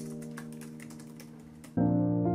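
Typing on a computer keyboard, a quick run of key clicks over soft piano background music. The clicks stop near the end as a new, louder piano chord comes in.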